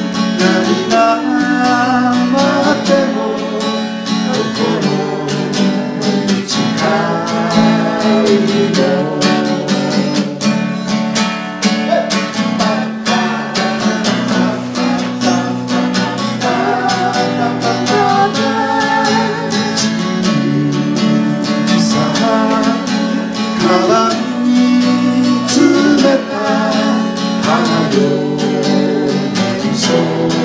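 Live amateur band playing a Japanese folk song: strummed acoustic guitar under a woman's singing voice, continuing without a break.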